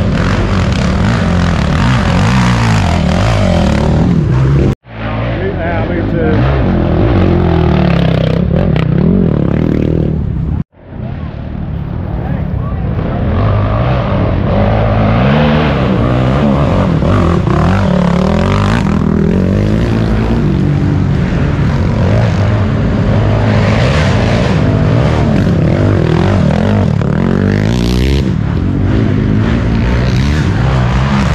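ATV engine revving on a steep dirt hill climb, its pitch rising and falling with the throttle. The sound cuts out abruptly twice, about five and eleven seconds in.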